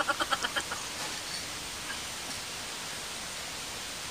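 A rapid series of small animal chirps, about ten a second, fading out within the first second, then only quiet room tone.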